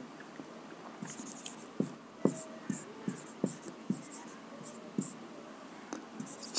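Marker pen writing on a whiteboard: a faint run of short squeaks and scratches of the tip as the words are written, stroke by stroke, over a few seconds.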